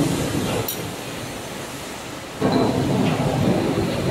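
Workshop noise of hand tools on a steel roll forming machine: a steady mechanical rumble with metal clinks of spanners and a crank handle turning its adjusting screws and nuts. There is a sharp click just under a second in, and the noise gets louder about two and a half seconds in.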